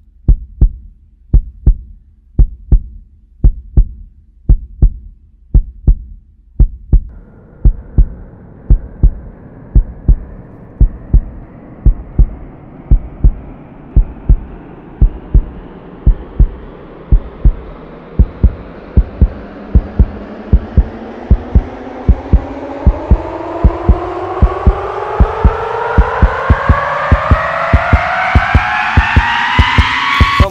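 Trailer sound design: a low heartbeat-like pulse thuds steadily, about one and a half beats a second. About seven seconds in, a rising riser tone joins it and climbs in pitch and loudness, building tension toward the end.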